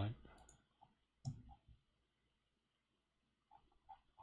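A few faint clicks at a computer as code is run: one sharper click a little over a second in, two softer ones just after it, and a few light clicks near the end.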